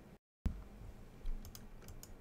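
Computer keyboard typing: a few sharp keystrokes in the second half over low room noise.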